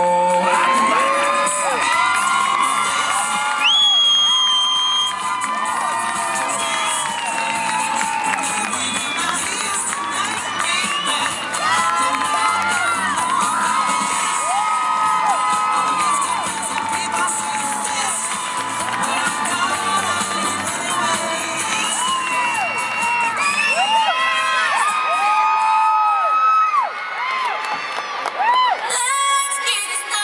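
Arena crowd cheering and screaming with many high-pitched young voices as a cheerleading team takes the mat, with one long shrill held note about four seconds in.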